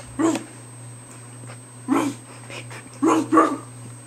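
Small black dog giving short, sharp barks, one about a second in... then another at two seconds, with a laugh breaking in near the end.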